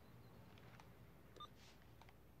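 Near silence: room tone, with one faint short electronic beep from a cordless phone handset about one and a half seconds in as the call is ended.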